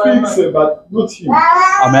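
Speech only: a man talking, with one long high-pitched, drawn-out phrase near the end.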